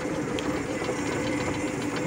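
Electric Polaris 4-wheel-drive's 72-volt AC motor drivetrain running at a steady speed: an even two-tone hum over a faint rushing noise.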